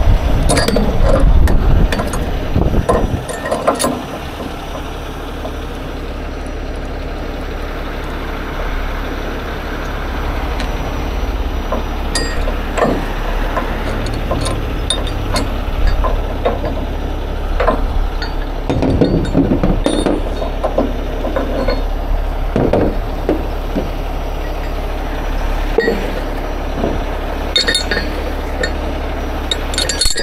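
A heavy truck engine running steadily, with scattered metallic clinks of chain and rigging hardware; the sound is louder and rougher in the first few seconds.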